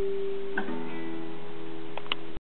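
Acoustic guitar playing the closing chords of a song: one chord rings on, and a new chord is strummed about half a second in and left to ring.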